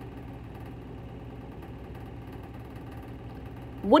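A steady low mechanical hum, even and unchanging, with a voice starting one word right at the end.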